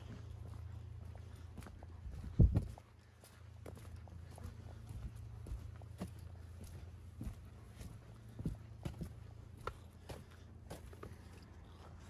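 Footsteps on the wooden plank deck of a footbridge: a run of short, hollow knocks, with one loud thump about two seconds in, over a steady low rumble.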